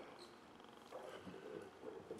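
Near silence: faint room tone, with a few faint, indistinct low sounds in the second half.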